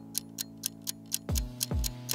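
Countdown timer sound effect: a clock ticking steadily about four times a second over a sustained synth music bed, with a couple of deep bass thumps past the middle.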